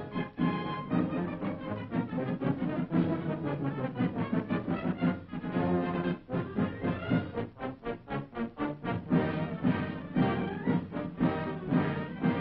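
Background music throughout, with a quick run of short repeated notes about seven to nine seconds in.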